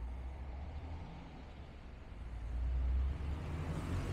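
Road traffic on the street alongside: a car's tyres and engine rumble, growing louder toward the end as it comes up close and passes.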